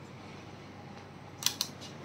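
Quiet room tone, then two quick sharp clicks about a second and a half in, followed by a few fainter ones: small handling clicks as a rakhi is fastened at a wrist.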